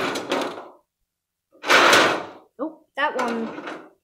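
Die-cast toy cars rolling across the bottom of a sheet-metal tray: two runs of about a second each, one at the start and one about one and a half seconds in, each a rushing rattle that fades out.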